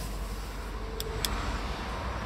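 Two light clicks about a quarter second apart over a steady low hum in the car's cabin: buttons on the Audi A4's leather multifunction steering wheel being pressed to work the instrument-cluster menu, with the engine off.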